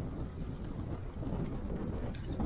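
Wind buffeting the action camera's microphone as it moves along with a bicycle, a steady low rumble.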